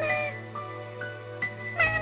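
A small child's high voice calling "mamma" in drawn-out, falling wails, once at the start and again near the end, over soft background music with sustained melodic notes.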